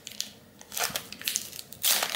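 Foil trading card pack wrapper crinkling and crackling as it is handled in the fingers, with a louder burst of crackle near the end.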